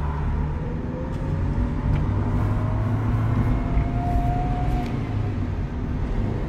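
Honda Civic EK hatchback's engine heard from inside the cabin while driving. Its pitch rises steadily as the car accelerates, then drops off about five seconds in.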